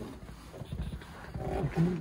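1963 Mercury Comet S-22's engine during a cold start, a low steady rumble, with a man starting to speak near the end.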